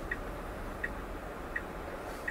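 Tesla turn-signal indicator ticking three times, about one tick every three-quarters of a second, faint over a low cabin hum; the left turn signal is on for a left turn.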